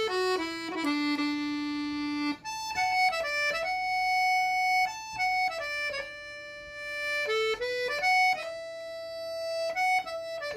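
Piano accordion playing a slow melody solo: long held single notes that step up and down, over a steady sustained lower note.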